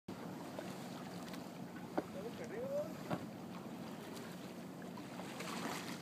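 Steady low hum of a tour boat's engine under wind and water noise, with a couple of short clicks and a brief rising voice-like call around two to three seconds in.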